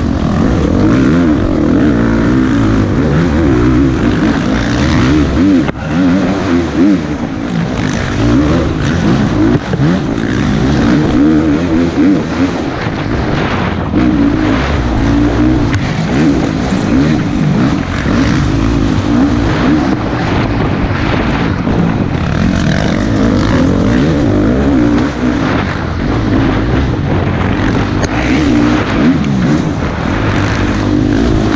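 KTM dirt bike engine revving up and down hard at race pace, heard from a helmet-mounted camera, with brief throttle chops about six and ten seconds in.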